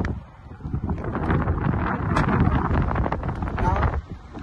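Wind buffeting the microphone: a loud, low, gusting rumble mixed with rustling and scuffs from movement, with a sharp click about two seconds in.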